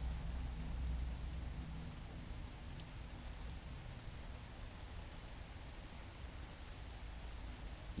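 Steady light rain falling, over a low rumble, with a couple of faint clicks about one and three seconds in.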